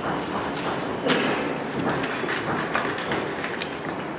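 Scattered knocks and clicks over a busy room background, the sharpest knock about a second in.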